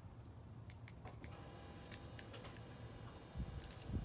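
Faint scattered clicks and light jingling from a key fob being handled, over quiet garage room tone. A low rumble comes in near the end.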